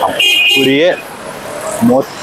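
A man talking, with a vehicle horn sounding once for under a second in the street traffic, starting a moment in.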